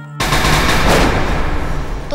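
A sudden loud burst of dense, rapid crackling noise, starting about a fifth of a second in and easing slightly toward the end.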